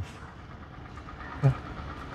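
Faint steady outdoor background noise, with a short spoken 'yeah' about one and a half seconds in.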